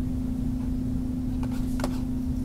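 Steady low background hum with a constant pitched tone in it, and two faint clicks about a second and a half in.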